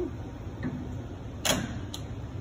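A shock absorber being fitted into a shock dyno's upper gripper: a sharp metal click about one and a half seconds in and a lighter click just before the end, over a steady low hum.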